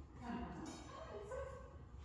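A dog whining and yipping in a few short high calls that waver in pitch.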